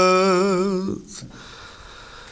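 Unaccompanied male voice holding one long note of an ilahi, an Albanian Islamic devotional hymn, with a slight vibrato. The note ends about a second in, leaving a short pause before the next phrase.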